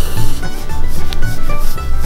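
A hand rubbing a dog's fur, making a close, scratchy rubbing sound, over background music.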